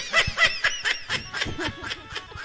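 A person laughing in a quick run of short bursts, about five a second.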